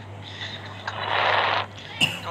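A person's voice coming through a voice-chat app as breathy, hissing sounds with no clear words, over a steady low hum.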